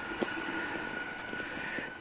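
Steady distant urban background noise, a low-level even hum with a faint high steady tone in it, and one small click shortly after the start.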